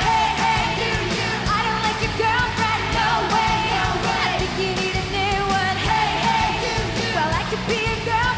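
Live rock band with a female lead singer: vocals over electric guitars and a steady drum beat.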